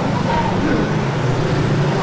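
Low, steady murmur of many men's voices reciting together during congregational prayer in a mosque.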